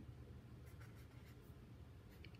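Faint scratching of a pen writing a short word on a paper worksheet held on a clipboard, a few quick strokes around the middle, over a low steady hum.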